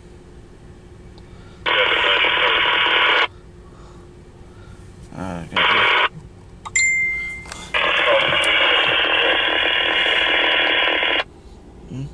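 Voice chatter from a two-way radio speaker, thin and narrow-sounding, in three transmissions that cut in and out abruptly: one about a second and a half long near two seconds in, a brief one around six seconds, and a longer one of about three and a half seconds from about eight seconds in. A short beep tone comes between the last two.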